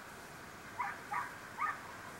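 A dog yelping three times in quick succession, short high yips a little under half a second apart.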